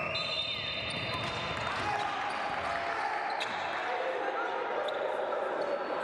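Basketball game on a hardwood court in a large hall: the ball bouncing, with players' voices and shouts over a steady hall din, and a brief high tone near the start.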